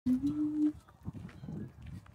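A farm animal's single short call at the very start, one steady note that lifts slightly in pitch and lasts well under a second, followed by quieter low-pitched sound.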